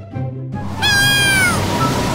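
Background music gives way to the noise of rough sea waves about half a second in. A single high-pitched cry, falling in pitch and close to a cat's meow, follows about a second in.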